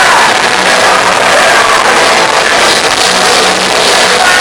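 Punk rock band playing live, with distorted guitars and drums, loud and steady with no breaks, captured close to overloading by a recorder in the crowd.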